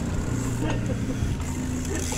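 Steady low rumble and hum of a downhill mountain bike's knobby tyres rolling fast over a paved street.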